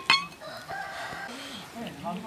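A rooster crowing faintly, one drawn-out call starting about half a second in and lasting just over a second. At the very start, a short ringing clink fades out.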